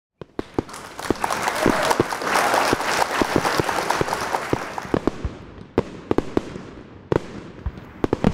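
Fireworks going off: a dense crackle of many sharp bangs over a hiss that builds over the first few seconds, then thins to a few scattered single bangs toward the end.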